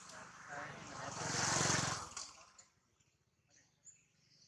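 A motor vehicle passing, its engine sound swelling to a peak about a second and a half in and fading away by about two and a half seconds.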